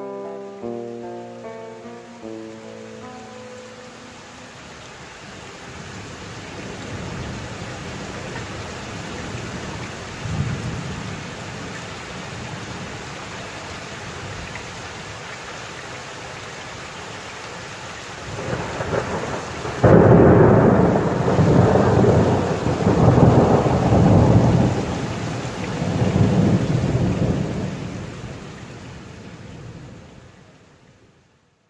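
Thunderstorm: steady rain with low rolling thunder, as the last clean guitar notes die away at the start. A sudden loud thunderclap comes about two-thirds of the way in, followed by several long rumbles, and the storm fades away at the end.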